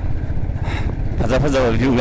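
Low wind and engine rumble from riding a motorbike, steady throughout. A man's voice singing drops out in the first second and comes back about 1.3 s in.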